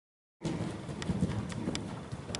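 Dead silence, then about half a second in a horse's hoofbeats begin: a canter on the soft sand footing of an indoor riding arena, dull repeated thuds with a few sharper clicks.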